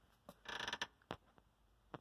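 A faint creak about half a second in, with a few light clicks around it.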